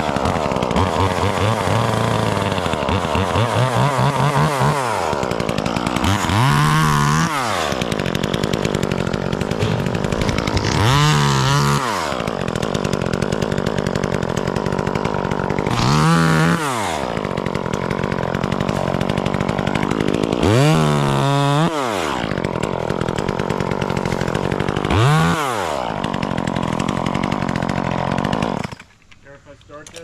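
Gas chainsaw revved up and eased back down about five times while cutting maple limbs, over a steady running drone. The sound drops away sharply near the end.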